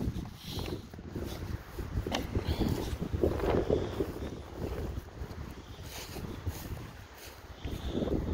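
Wind buffeting a phone's microphone, a rough low rumble that rises and falls, with footsteps rustling through long pasture grass.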